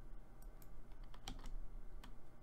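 A few keystrokes on a computer keyboard, the loudest about halfway through, over a steady low hum.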